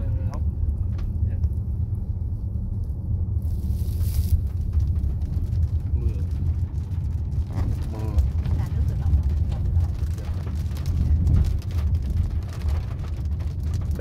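Inside the cabin of a Volkswagen Teramont SUV on the move: a steady low rumble of tyres and engine, with many light ticks from a few seconds in as raindrops start hitting the windshield.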